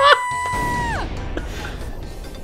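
A cartoon character's long, held, high-pitched scream that drops in pitch and stops about a second in, with people laughing over its start. A low rushing noise comes in under its end and carries on.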